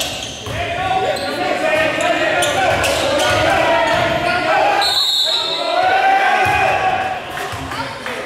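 Spectators' voices and shouts in a gymnasium, with a basketball bouncing on the hardwood court, echoing in the hall. A brief high tone sounds about five seconds in.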